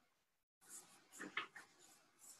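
Near silence broken by faint rustling and handling noise over a video-call line, which cuts out completely for a moment about half a second in.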